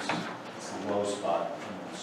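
Indistinct speech in a meeting room, talk too faint or off-mic to make out words, with a brief click right at the start.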